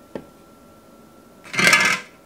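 Handling noise of plastic hummingbird-feeder parts on a kitchen counter. A light click comes just after the start, then a short, loud scraping rustle near the end as the red plastic feeder cover is taken up.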